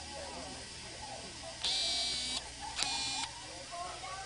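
Two high buzzing blasts, the first about three-quarters of a second long and the second about half a second, rising above the chatter of a crowd of people.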